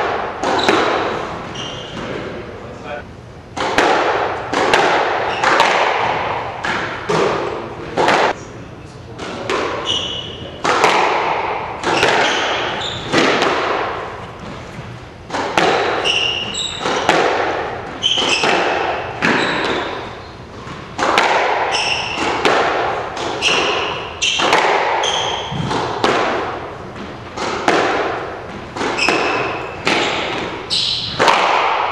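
Squash ball being struck by rackets and hitting the walls and floor of a squash court in a rally, sharp echoing smacks about once a second, with short high shoe squeaks on the hardwood floor.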